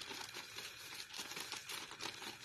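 A clear plastic bag crinkling and rustling irregularly as fish pieces are shaken and worked around in cornmeal inside it, coating them for frying.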